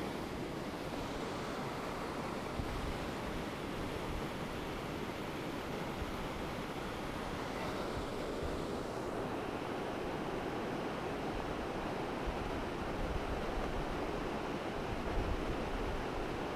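A river rushing over rocks, a steady even roar of water. Wind buffets the microphone in low rumbles, heavier near the end.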